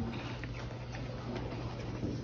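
Faint light ticks and scratches of a small paintbrush working watercolour on paper, over a steady low hum.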